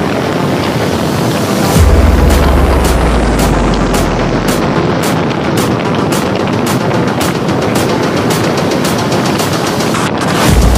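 Background electronic music: a deep bass hit about two seconds in, then a build-up of repeated drum hits that come faster and faster toward the end.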